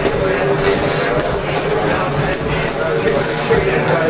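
Boxing gloves striking a small heavy bag hung in a swinging padded-pipe training frame, a series of punches, over a steady background hum and faint voices.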